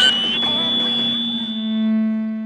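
Megaphone feedback and hum: a steady high whine over a low buzzing tone. The buzz swells and grows richer near the end as the megaphone is switched on for an announcement.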